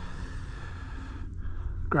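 Steady wind noise on the microphone, a low rush with a brief lull about one and a half seconds in.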